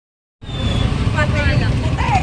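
Busy street noise, starting about half a second in: a steady low rumble of motorcycle and other vehicle engines, with people talking in the crowd.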